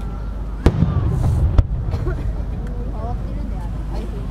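Aerial firework shells bursting overhead: two sharp bangs about a second apart in the first half, with a low rumble between them.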